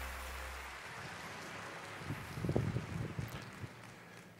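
The last of the intro music's low notes cuts off, and a patter of audience applause dies away, with a few low, irregular knocks about halfway through.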